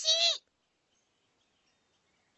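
A short high-pitched cartoon voice call with a wavering pitch, cut off abruptly under half a second in, then near silence.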